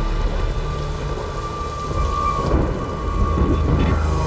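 Steady rain falling, with a low rumble of thunder throughout.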